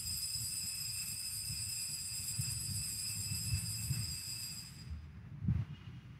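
Altar bell rung at the elevation of the chalice during the consecration: a high metallic ring of several clear tones that holds and then fades out about five seconds in.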